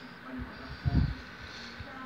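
Television sound playing faintly through the TV's speaker: brief snatches of soap-opera dialogue over a thin steady high tone, with a low thump about a second in.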